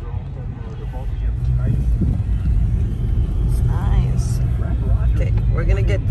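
Car road noise heard from inside the cabin while driving: a steady low rumble of engine and tyres that grows louder over the first two seconds as the car picks up speed.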